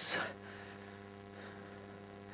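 Faint, steady mains hum in the hall's audio system, a low buzz made of several evenly spaced tones.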